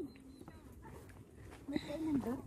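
Short vocal sounds from a person: a brief held hum trailing off at the start and a short wavering sound near the end, with faint background between.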